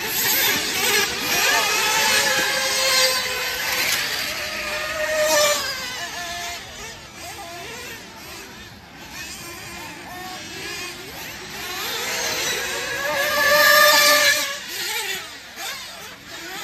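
Radio-controlled off-road buggies racing, their small motors buzzing at a high pitch that rises and falls as they accelerate, brake and pass. The sound is loudest over the first few seconds and again near the end.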